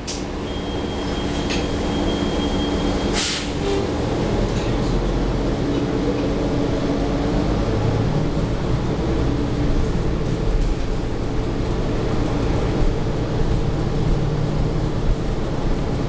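Cabin sound of a 2017 New Flyer XDE40 diesel-electric hybrid bus under way, its Cummins L9 diesel and hybrid drive running with several steady low tones over road noise. A single sharp knock comes about three seconds in, and a low hum grows stronger from about halfway through.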